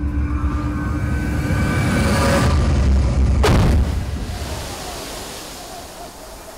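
Deep rumble from a stage effects test swelling to a sudden boom with a falling whoosh about three and a half seconds in, then fading into a steady hiss.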